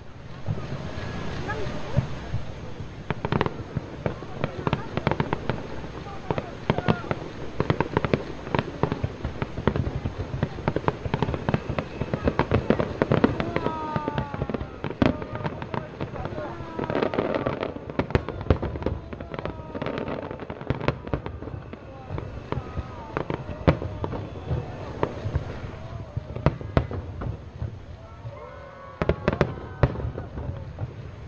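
Fireworks display: aerial shells and smaller effects bursting in rapid, irregular succession, many bangs close together with crackle between.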